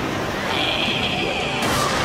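Action soundtrack of music and fight sound effects: a high shrill effect through the middle, then a sudden crash near the end as the monster's blow lands on the robot with a shower of sparks.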